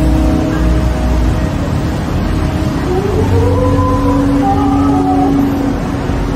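Busy city street traffic: a steady low rumble of passing vehicles with a held hum, and a pitched whine that rises from about halfway through.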